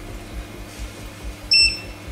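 Handheld fish-microchip reader giving one short high beep about one and a half seconds in as it reads the chip in its sealed injector pack: a successful read, showing the chip is a good one.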